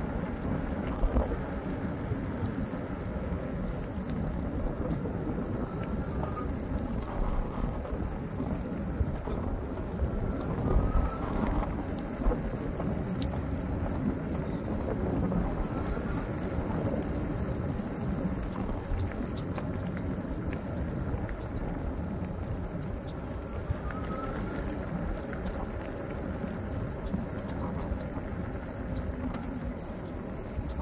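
Wind buffeting the microphone with road and tyre noise while riding an e-bike on asphalt, a gusty low rumble. A thin steady high whine runs beneath it.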